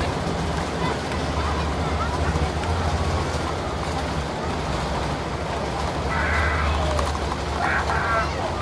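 Steady roar and low rumble inside the cabin of a Boeing 747-8I rolling out on the runway just after landing, heard from a seat over the wing. Voices talk over it about six seconds in.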